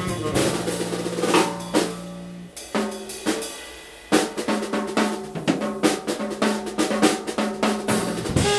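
Jazz drum kit playing a solo break while the two tenor saxophones rest: snare hits, rimshots, bass drum and cymbals, thinning out briefly in the middle before a steady run of strokes.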